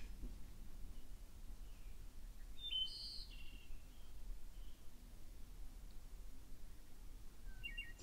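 Faint birdsong, a few short chirps about three seconds in and again near the end, over a quiet low background rumble.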